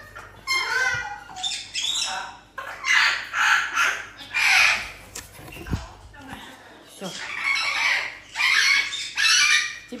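A pet parrot squawking and screeching in a string of loud calls, each about half a second to a second long, with a lull about halfway through.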